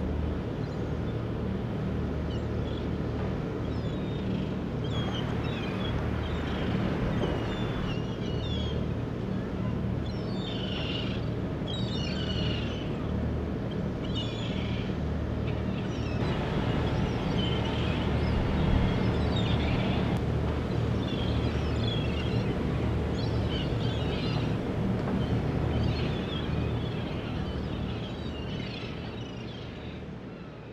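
Harbour ambience: a steady low engine hum from fishing boats, with birds calling over it. The sound fades out near the end.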